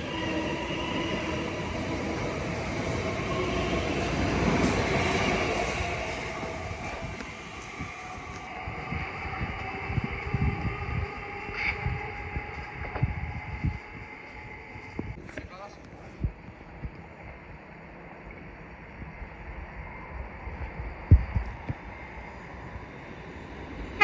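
Electric commuter train running out of the station alongside the platform, its traction motors whining steadily over the rumble of the wheels. The sound grows for the first few seconds and fades after about eight. A quieter rail rumble with a few scattered knocks follows as another train approaches in the distance.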